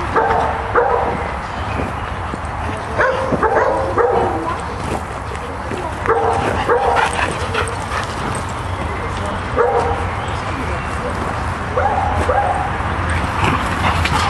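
Dogs playing rough together, giving short yips and barks in bursts every few seconds.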